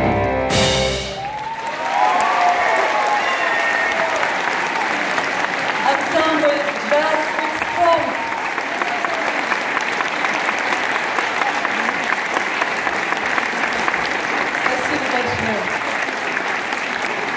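A small jazz band with horns, piano and drums hits its final chord, which ends about a second in. An audience then applauds steadily, with voices calling out over the clapping in the first few seconds.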